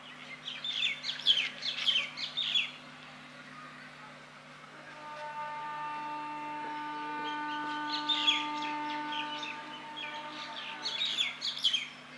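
Birds chirping in quick, high clusters: near the start, about eight seconds in, and again near the end. From about five seconds a steady held tone sounds for around six seconds, over a faint low steady hum.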